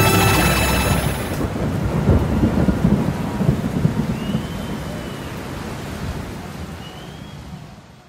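A live band's final held chord stops about a second in, then a festival crowd applauds and cheers, with a couple of whistles, fading out near the end.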